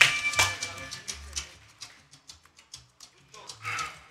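A music sting and the tail of a ring announcer's drawn-out call die away, leaving a scattering of sharp claps and taps from a few people in an empty arena. A short voice comes in near the end.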